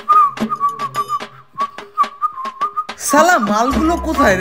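Whistling held on nearly one pitch with small wobbles, over a run of quick light clicks. About three seconds in a loud voice takes over, its pitch sliding up and down.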